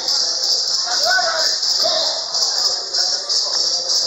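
Faint background voices of people in a boxing gym over a steady high-pitched hiss.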